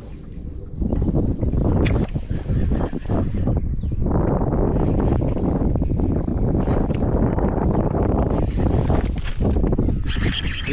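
Wind buffeting the microphone: a steady, loud, low rumble with a few light ticks.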